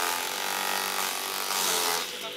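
TAKYO TK 15 electric forage chopper, its 1.5 kW single-phase motor turning at 2,900 rpm, running under load as it shreds green stalks fed into the hopper: a steady whine with a hiss of chopping.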